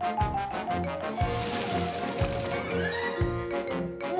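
Background cartoon music with a steady beat of low thumps under held and repeated notes, and a tone sliding upward in pitch over it in the second half.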